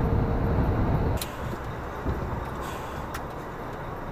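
Lorry cab noise at motorway speed: a steady low rumble of engine and road with a faint steady tone, which cuts off abruptly about a second in. It gives way to a much quieter steady hum with a few light clicks.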